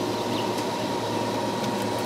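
A steady mechanical hum and hiss, with a faint steady high tone over it.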